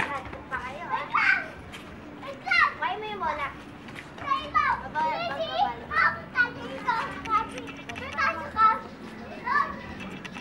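Several young children calling out and chattering in high voices while playing a running game, in short bursts with brief pauses.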